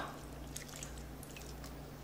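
Lime juice poured from a glass onto seasoned meat in a steel pot: a faint, soft trickle and drip.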